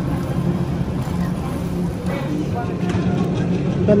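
Supermarket background noise: a steady low hum and rumble, with faint voices in the background.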